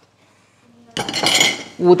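A short clatter of kitchen utensils about a second in, with a brief ring, as a Thermomix TM6 butterfly whisk attachment and a spatula are handled over the machine's mixing bowl.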